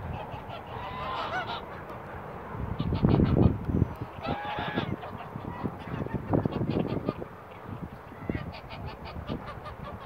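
Domestic geese honking several times, with a louder low rumble about three seconds in.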